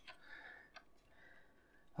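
Near silence: faint rustling and one light click as the model's front subframe is worked into place by hand.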